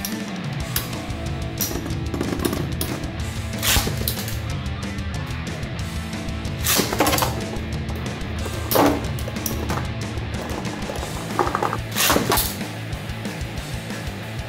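Background rock music plays throughout. Over it come several sharp clacks at irregular intervals, as the metal Beyblade spinning tops Galaxy Pegasis (attack type) and Gravity Perseus (defence type) strike each other and the stadium wall.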